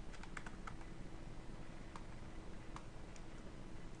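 Faint computer-keyboard keystrokes: a quick run of about four or five taps in the first second, typing a number into a field, then two single clicks about two and two and three-quarter seconds in. A faint steady hum underneath.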